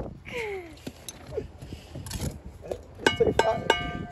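Shouts of "go", then from about three seconds in a quick run of sharp metallic clinks with ringing tones: a steel brick trowel knocking against concrete blocks as they are laid at speed.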